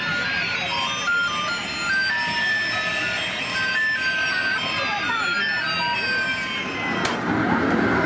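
Electronic jingle from children's ride-on cars: a simple beeping tune of stepped tones with long whistle-like glides, one rising and one falling. About seven seconds in it gives way to a louder rushing clatter with a few sharp knocks.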